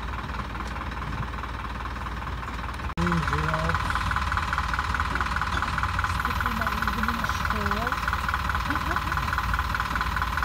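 Vehicle engine idling with a low, steady rumble and faint voices. About three seconds in the sound cuts abruptly, and a loud, steady high buzz comes in over the engine and holds to the end.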